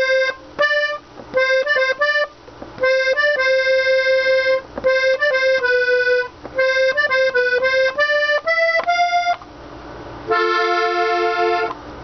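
Hohner Corona II three-row diatonic button accordion in G playing the closing phrase of a tune slowly, a single-note melody on the treble buttons in short phrases with brief pauses between them. About ten seconds in it settles on a held chord of several notes.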